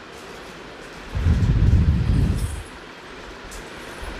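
A low rumble lasting about a second and a half, over a faint steady hiss.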